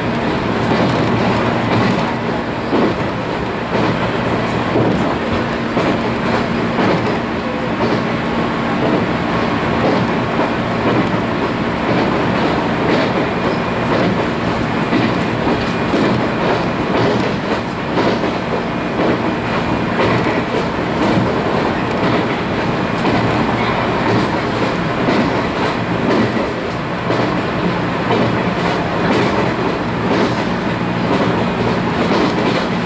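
JR 719 series electric train running at speed, heard from inside the passenger car: a steady rumble of wheels on rail with frequent clicks over rail joints.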